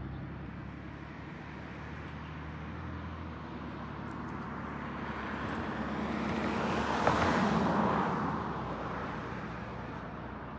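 A motor vehicle passing close by on the street. Its road and engine noise swells to a peak about seven seconds in and then fades away. In the first few seconds a nearby engine idles low underneath it.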